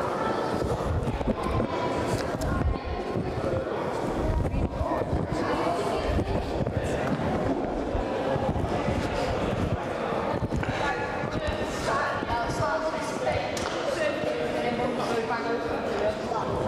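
Children's voices chattering over one another in a sports hall, with scattered dull thuds on the floor.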